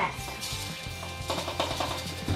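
Soft background music, with faint clusters of crackling clicks as Pop Rocks are poured through a plastic funnel into cola.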